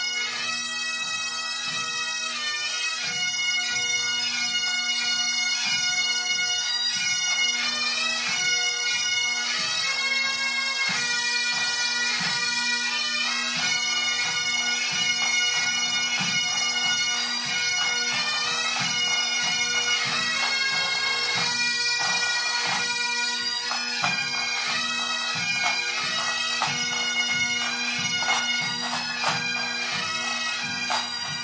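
Pipe band bagpipes playing a tune over their steady drones, with drum beats underneath.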